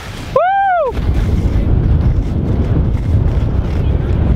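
Steady low rush of wind buffeting the camera microphone, mixed with skis running over snow, as a skier heads fast down the slope. It starts about a second in, right after a shout.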